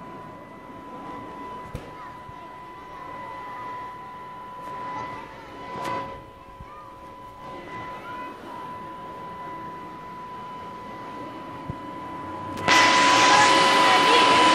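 A steady high-pitched hum with faint background voices, then, near the end, a loud, even rushing noise that starts suddenly and keeps going.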